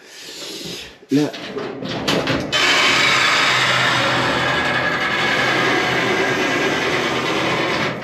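Up-and-over garage door opening on a motor: a steady mechanical run with a low hum for about five seconds, cutting off suddenly as the door comes fully open.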